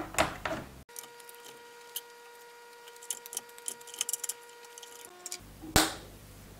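A single sharp click near the end, a switch on the extension board being flipped on to power the circuit, after light scattered ticks over a faint steady electronic whine.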